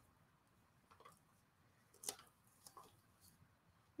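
Near silence, broken by a few faint ticks of paper and fabric being handled, the clearest one about two seconds in.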